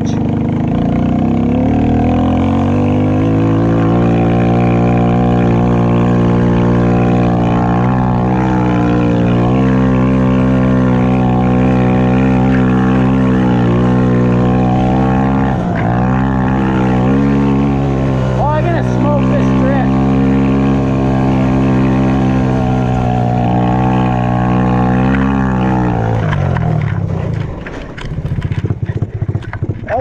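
Snow quad's ATV engine revving up over the first few seconds, then running at high, steady revs as it drives through deep snow. The engine note drops off about 27 seconds in and the sound turns choppy and uneven near the end, as the quad tips over.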